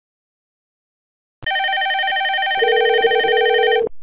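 Computer softphone ringtone for an incoming VoIP call: a loud, rapidly warbling electronic ring that starts abruptly about a second and a half in. About a second later a lower steady tone joins it, the ringback heard by the calling softphone, and both cut off just before the end.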